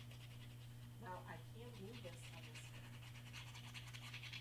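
Near silence: a steady low electrical hum, with a woman's faint murmur or hum about a second in.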